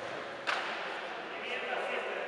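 Basketball gym ambience: indistinct voices echoing around the hall, with one sharp slap about half a second in.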